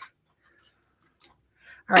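A single light snip about a second in from embroidery snips cutting a short piece off plaid wired ribbon, followed by a faint rustle of the ribbon.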